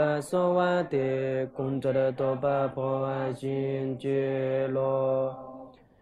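A low male voice chanting the verses of a Tibetan Buddhist lineage supplication prayer in a near-monotone, syllable by syllable with short breaks between phrases, fading away just before the end.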